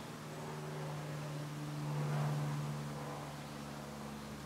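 A steady low hum under a faint even hiss, swelling slightly about two seconds in: quiet background tone in a pause between spoken words.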